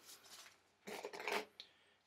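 Hands handling a small drawn item, with a faint rustle and then a short, louder rustle about a second in.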